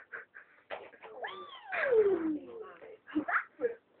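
A cat's meow: one long call, rising briefly and then falling steadily in pitch, beginning about a second in. A cough comes just before it and a few spoken fragments after.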